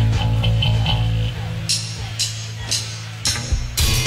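A live band playing, with a bass guitar holding low notes under sparse cymbal strokes. The full drum kit comes back in near the end.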